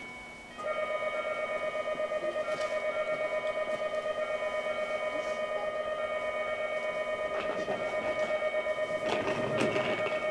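About half a second in, an electronic railway warning alarm starts: one steady tone pulsing in quick, even beats as the train approaches. Near the end, the rumble and clatter of the 521-series train's wheels running over the points joins it.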